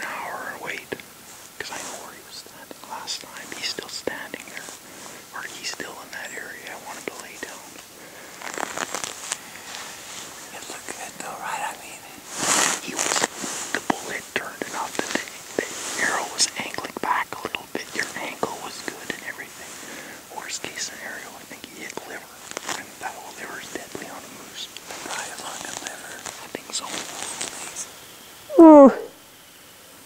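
Two people whispering back and forth in low voices. Near the end comes one short, loud sound whose pitch rises.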